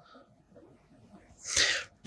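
A short, sharp intake of breath lasting about half a second near the end, just before speech. Before it, faint light scratches of a marker writing on a whiteboard.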